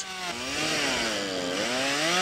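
Stihl MS 241 C two-stroke chainsaw running under load, cutting through the trunk of a fallen tree. Its engine pitch dips twice and recovers as the chain bites into the wood.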